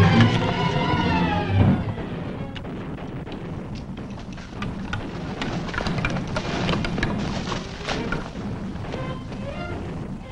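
Orchestral film score playing loudly, then dropping away about two seconds in. A scattered run of sharp cracks and snaps follows over fainter music until the end.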